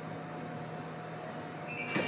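Swiss intercity coaches standing at a platform with a faint steady low hum. Near the end a steady high beep starts: the door-closing warning just before the doors shut.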